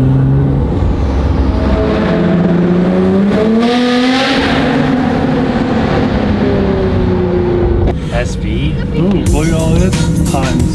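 Nissan R35 GT-R's twin-turbo V6 pulling, its note rising for a couple of seconds, then easing back and running steadily, heard from inside the cabin. About eight seconds in the engine sound cuts and music takes over.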